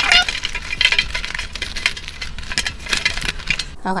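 Paper envelopes being shuffled by hand in a metal tin: a quick, uneven run of dry paper rustles and flicks, with the envelopes knocking against the tin.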